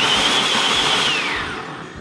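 Small personal blender motor running at full speed with a high, steady whine as it blends water. Over the last second the whine falls in pitch and fades as the motor is switched off and spins down.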